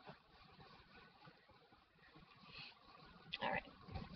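Faint rustling and handling noise from hands moving wrapped menstrual pads and liners, with a few soft scuffs. A single spoken "alright" near the end.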